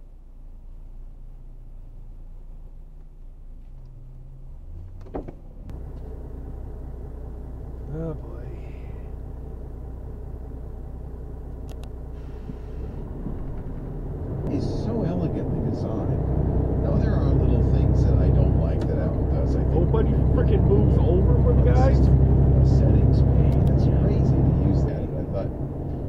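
Car cabin noise picked up by a dashboard camera: a steady low engine and road hum that grows louder about halfway through as the car drives, with faint voices over it.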